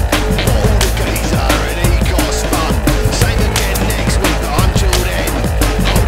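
Loud rock band playing an instrumental passage without vocals: a thick wall of guitar and bass with fast, steady drum hits several times a second.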